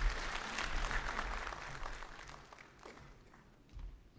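Audience applauding, strongest in the first second or two and then dying away.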